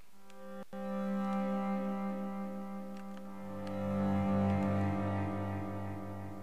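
Sampled Bazantar, a bowed acoustic bass with sympathetic strings, playing a bowed phrase from a Kontakt library. A sustained bowed note rings with a rich overtone halo, and about three seconds in a lower note joins it, swelling louder before easing off.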